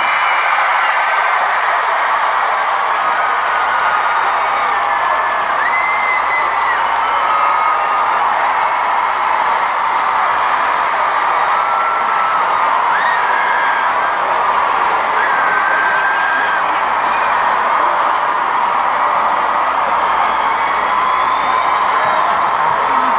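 A large concert crowd cheering and screaming at the end of a song, a steady wall of noise with shrill held screams rising above it now and then.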